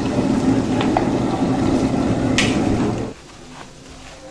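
Shredded meat floss (abon) frying in oil in a large metal wok while being stirred, with a few short clinks and scrapes of the spatula, the loudest about two and a half seconds in. The frying noise cuts off suddenly a little after three seconds.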